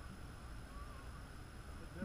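Faint outdoor background: a low rumble, a thin steady high-pitched whine, and a few faint, short distant chirping calls.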